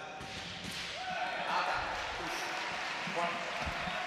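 Arena crowd noise that swells about a second in, with voices shouting, as a touch is scored in a sabre bout.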